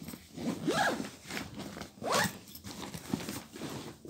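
A bag zipper being pulled: two quick rising zips about a second and a half apart, with handling rustle between them.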